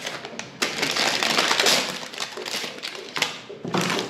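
Crinkling and rustling of paper-and-plastic sterilization pouches as a gloved hand picks up a packaged dental extraction forceps, coming in spells with a brief lull in the middle.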